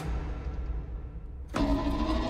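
Film trailer sound design: a deep, low rumbling drone. About one and a half seconds in, a louder swell with steady held tones joins it.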